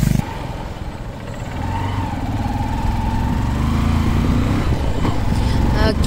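Motorcycle engine running while riding along a road, heard from the rider's seat, getting louder over the first few seconds.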